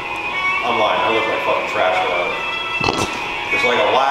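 A man talking, with background music, and one sharp click about three seconds in.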